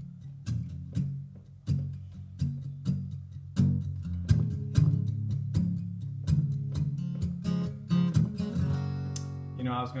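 Acoustic guitar strummed in a steady rhythm, a song intro that breaks off just before the end.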